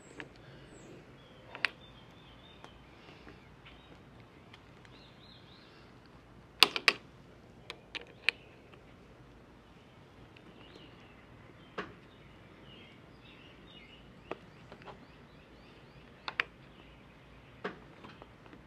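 Sparse, short clicks and taps of an Allen wrench working a clamp bolt on a truck bed-cover rail as it is tightened, the loudest pair about seven seconds in. Faint birdsong in the background.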